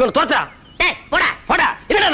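A rapid run of short, high yelping cries, about three a second, each one arching up and down in pitch.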